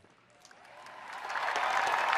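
Convention crowd applauding, swelling steadily from faint to full.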